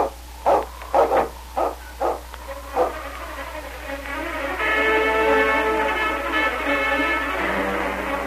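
A dog barking about five times in short, quick barks, followed by an orchestral music bridge of strings and brass that swells in from about three seconds in and plays through the rest.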